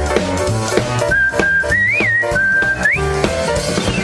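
Fragment of a cartoon TV theme song: a band playing, with a high whistle carrying the melody. The whistle comes in about a second in, bends up and back down in the middle, and slides upward near the end.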